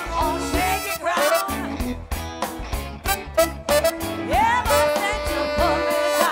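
Live blues-soul band playing, with voices singing over it and a long held sung note near the end.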